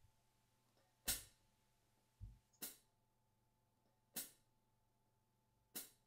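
Near silence broken by four short, sharp clicks about a second and a half apart, with one low thump about two seconds in.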